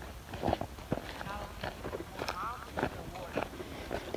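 Faint footsteps on dry, clumpy soil and dry grass, about two steps a second.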